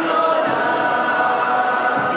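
A crowd of devotees singing a religious song together, many voices holding long notes.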